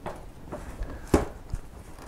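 A cardboard box being handled and turned over, with one sharp knock about a second in and a couple of lighter taps.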